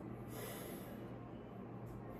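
A man sniffing a slice of fresh chili pepper held to his nose: one soft inhale through the nose, about half a second in.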